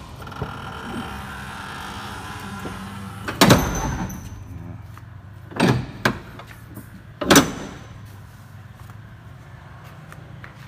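Kia K165 light truck's diesel engine idling steadily, with four loud metal bangs of the cab and its door being shut, the first and last the loudest.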